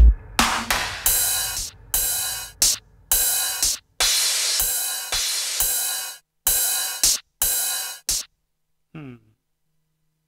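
Cymbal- and hi-hat-like drum-machine hits played one after another on an Akai MPC One's pads, unevenly spaced at about one or two a second, stopping a little past eight seconds in. A brief falling-pitch tone follows near the end.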